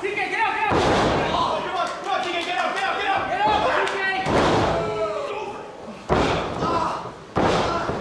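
Wrestlers' bodies slamming onto a wrestling ring's mat: about four heavy, booming thuds with a reverberant tail. They fall about a second in, just after four seconds, around six seconds and near the end. Voices are heard between the impacts.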